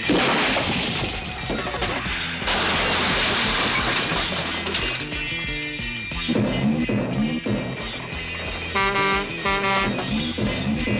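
Cartoon background music. A sudden loud rushing, crash-like sound effect opens it and fades over a couple of seconds, and two short pitched blasts come near the end.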